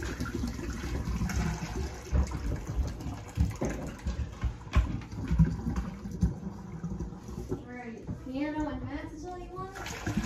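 Mead must thick with beeswax cappings pouring from a plastic bucket through a funnel into a glass carboy, with a few sharp taps of a stick working the funnel so the cappings don't clog it. A short stretch of voice comes near the end.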